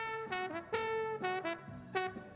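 Playback of a soloed live brass-horn microphone: a horn plays a quick line of about six short, separated notes, its low-mid range being pulled out on the console EQ.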